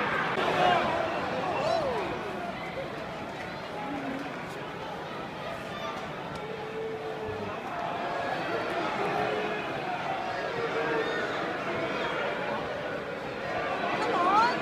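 Football stadium crowd of many voices talking and calling at once. It is loudest for the first couple of seconds, then settles to a steady murmur.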